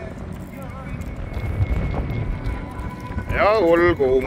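Open-air ambience with a steady low rumble of wind on the microphone and faint voices, then a loud, high-pitched voice calling out near the end.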